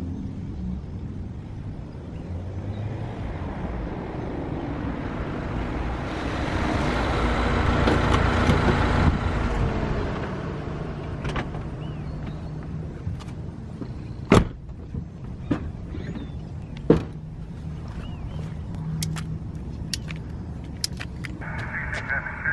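A red Mini convertible drives up close, its sound swelling and then fading as it stops, with a low steady hum under it. Later come two sharp knocks and a string of small clicks of handling.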